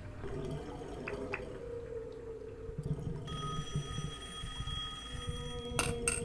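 Film soundtrack played back through speakers: a recording of whale song from a cassette player in a quiet bath scene, over a low rumble. A steady high tone comes in about halfway and breaks off near the end with a sharp click.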